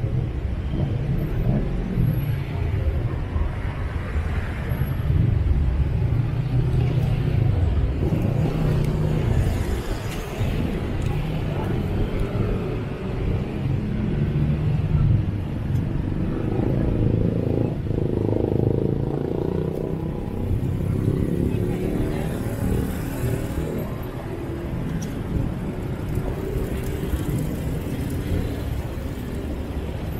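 City street traffic: motorbike and car engines running and passing close by, a low rumble that swells and fades as vehicles move.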